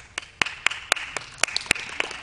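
Applause breaking out as a dance routine ends: a few people clapping, with sharp, loud single claps about four times a second over a growing patter of lighter clapping.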